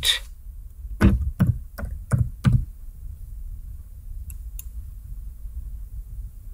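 Five keystrokes on a computer keyboard, about a third of a second apart, typing a short word, then two faint clicks near the end, over a low steady hum.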